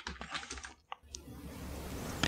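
Faint computer keyboard typing: a few soft key clicks in the first half second or so, then a quiet stretch with only a faint hiss.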